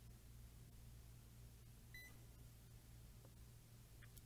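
A digital multimeter gives one short, high continuity beep about halfway through as its probes are held across a resistor. Otherwise there is near silence with a low steady hum.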